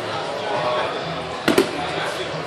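Two quick, sharp slaps close together about a second and a half in, as of a body or hand striking a grappling mat, over a murmur of voices in the hall.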